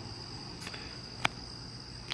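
Crickets trilling steadily in one continuous high note, with a single faint click about a second in.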